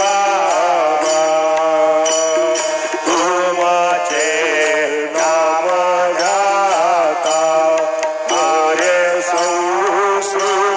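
Hindu devotional aarti hymn being sung, the melody gliding over a steady held drone, with a faint regular high jingle keeping the beat.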